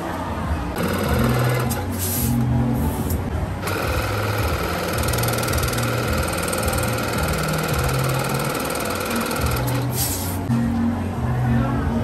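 Electric balloon inflator running, filling a long gold modelling balloon. It runs for about three seconds starting about a second in, then steadily for about six more, and stops near ten seconds. Background music plays throughout.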